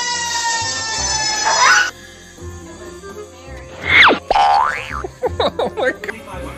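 Cartoon-style comedy sound effects over background music with a steady beat. First comes a long tone that sinks slowly in pitch and cuts off abruptly after about two seconds. About four seconds in there is a quick falling glide and a rising one, then a run of short springy boings near the end.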